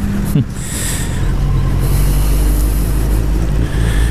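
Suzuki GSX-R1000 K3's inline-four engine running steadily at low speed while filtering through slow traffic, with road and wind noise.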